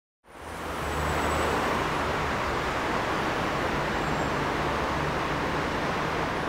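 Steady street traffic noise, a continuous hum of cars, fading in about a quarter second in.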